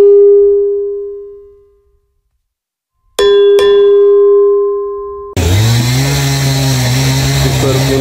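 Sound effects of an animated channel-logo intro: a bell-like ding that rings out and fades over about two seconds, then after a short silence two more dings in quick succession whose ringing is cut off abruptly, followed by a steady low droning tone.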